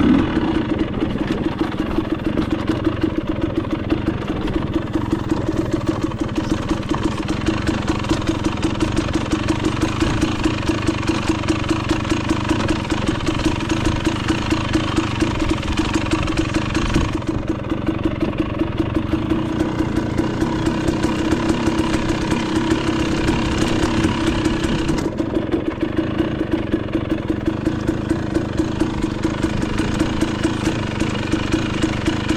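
300 cc two-stroke enduro dirt bike engine running steadily at low revs, with an even pulsing beat.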